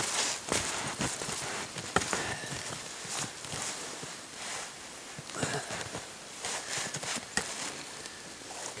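A boot being set onto a homemade snowshoe of spruce boughs on snow, with irregular crunches and rustles of snow, boughs and paracord lashing being handled.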